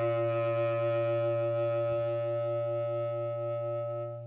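A large low clarinet holding one long low note. Several tones sound together, one of them beating in quick, even pulses, and the note begins to fade near the end.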